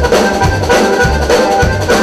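A live Tejano band playing, led by a Hohner Corona button accordion over electric bass and drums, with a steady low beat about twice a second.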